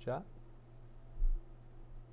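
A few faint computer mouse clicks as a menu item is chosen, with a dull low thump about a second in, the loudest sound here, over a steady low electrical hum.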